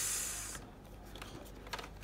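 Small cardboard box being handled and pried open by hand: a short scraping hiss in the first half-second that fades away, then quiet handling with a few faint light taps near the end.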